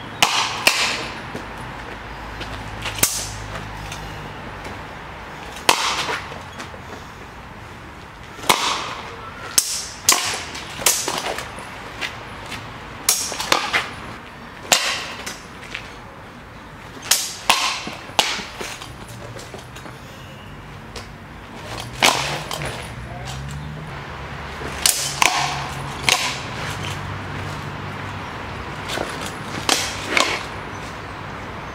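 Shamshir sabres and bucklers clashing in sword-and-buckler sparring: two dozen or so sharp, irregular clashes, some in quick pairs and some ringing briefly.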